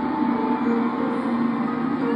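Concert music from an arena sound system, recorded from the crowd: a few long held notes with little bass underneath.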